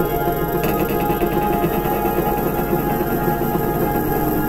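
Experimental ambient drone music: dense, steady held tones, with a faint rapid shimmer joining higher up about half a second in.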